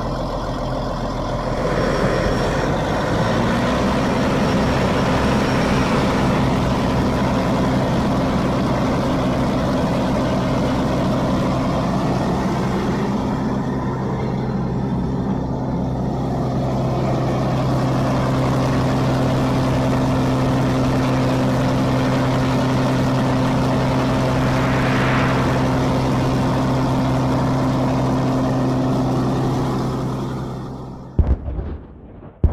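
Farm tractor's diesel engine running loud and steady at raised revs under load while towing a vehicle stuck in mud; the note comes up about two to three seconds in and then holds almost unchanged.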